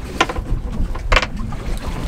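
Wind buffeting the microphone on a small boat at sea, over a low rumble, with a few short knocks, the sharpest about a second in.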